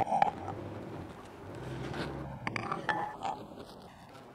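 UV flatbed printer's print carriage pushed by hand along its rail with the carriage motor unpowered, giving a steady low rumble for about two seconds, then a few light clicks.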